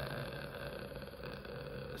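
A man's drawn-out hesitation sound "euh", held steady at one pitch for about two seconds before speech resumes.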